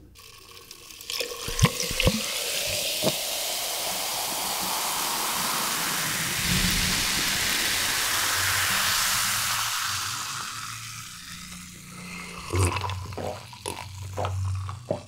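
Coca-Cola poured from a plastic bottle over ice in a glass jar: a couple of sharp clicks as the pour starts, then a steady fizzing pour for several seconds that fades out. Near the end come a few swallowing gulps and clinks as the cola is drunk from the jar.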